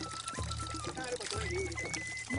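Blood spurting from a cow's pricked neck vein into a calabash, heard as a light pouring of liquid under background music with a steady low pulse.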